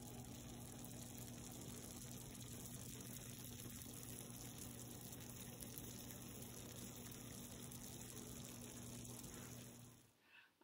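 Faint steady background hiss with a low electrical hum, cutting off abruptly at the end: room tone.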